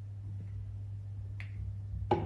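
A steady low hum with one short, sharp click about one and a half seconds in.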